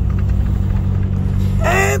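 Heavy truck's diesel engine running at low speed, heard from inside the cab as a steady low rumble while the truck creeps forward in a queue.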